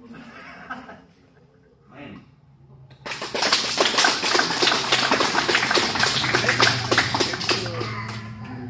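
A group applauding: quick, dense hand-clapping starts suddenly about three seconds in and keeps on, with voices calling out over it.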